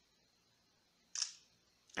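Huawei P8 smartphone's shutter sound effect, played once about a second in: the phone's signal that a screenshot has been captured.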